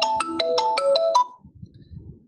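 Phone ringtone: a quick melody of short electronic notes stepping up and down in pitch, which stops a little over a second in.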